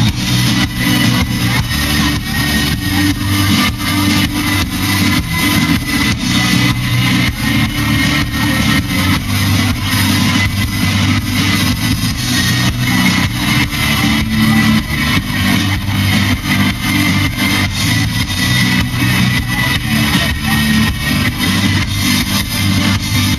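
Rock band playing live, with electric guitars over a steady drum beat, loud and continuous.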